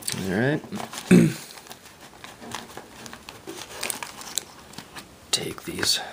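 Wax-paper trading card packs crinkling in the hands as they are taken out of their cardboard display box, in irregular small crackles.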